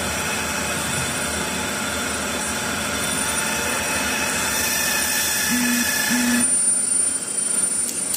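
A steady mechanical drone that drops away suddenly about six and a half seconds in, with two brief low tones just before it stops.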